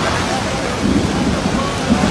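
Heavy tropical downpour: a dense, steady hiss of rain pouring down and splashing on the ground and umbrellas. Low rumbling surges come about a second in and again near the end.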